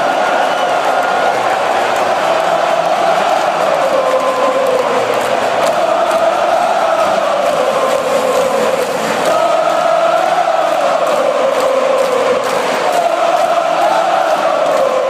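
A large stadium crowd of Swedish football fans singing a chant in unison: one loud, unbroken melody of many voices that slowly rises and falls in pitch.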